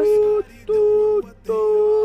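A high, voice-like tone held on one steady pitch in three short notes of about half a second each, like a hummed or sung note.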